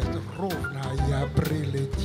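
Jazz band accompaniment of tenor banjo strums, about two a second, over a steady double bass note, with the singer making a wordless vocal sound that slides up and down in pitch between sung lines.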